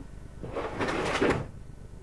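A brief rough scraping clatter that starts about half a second in and lasts about a second, ending in a few sharp knocks, over a steady low hum.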